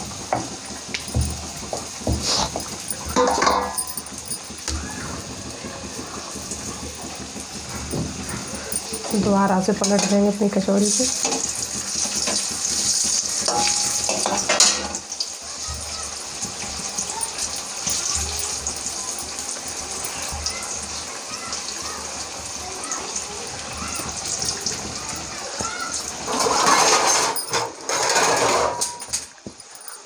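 Kachoris deep-frying in hot oil in a steel pan, a steady sizzle, with a few knocks of kitchen utensils.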